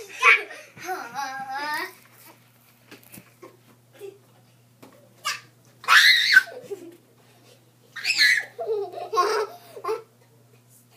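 Young boys laughing in several loud bursts, with high-pitched vocal cries, separated by short quiet gaps.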